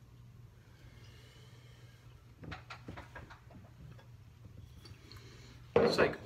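Steady low hum of a quiet room with a few faint clicks around the middle, then one sharp, loud clunk near the end as a glass beer goblet is set down on a table.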